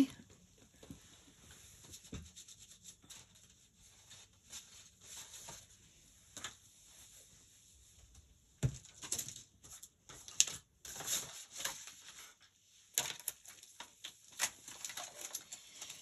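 Faint handling of rubber stamps and stamping supplies: scattered small clicks, taps and rustles, with one sharper knock about nine seconds in.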